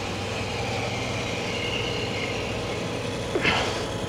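Steady hum of a 1967 Clausing/Covel 512H cylindrical grinder's motors running. About three and a half seconds in, a short metallic knock and scrape as the swing-down internal-grinding attachment is moved back out of the way.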